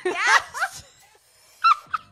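Women laughing hard, with high-pitched squealing laughter loudest in the first half-second, then a short shriek near the end.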